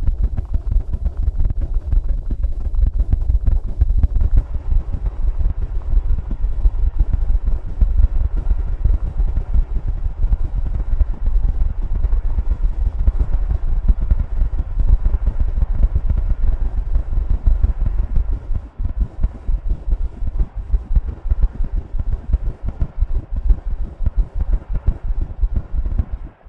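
Experimental electronic music: a loud, deep, rapidly fluttering bass throb with a faint hiss above it. It grows sparser and more broken about three-quarters of the way through.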